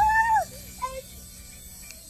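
A short, high-pitched excited vocal exclamation that rises and falls, then a briefer one about a second in, over a low steady hum.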